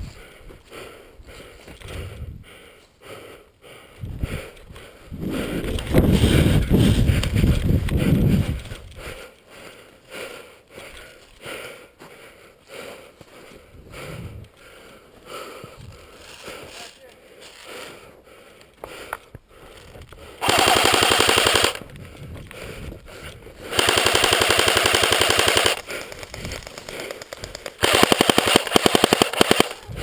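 An electric airsoft gun firing on full auto in three bursts of rapid shots, each lasting about two seconds, in the last ten seconds. Earlier, about six seconds in, a loud low rush of noise lasts about three seconds.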